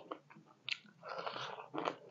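A person's mouth close to the microphone biting and chewing crunchy food: a sharp crunch under a second in, then a longer stretch of chewing and more crunching bites near the end.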